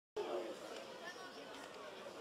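Indistinct voices chattering with no clear words, starting suddenly just after the start.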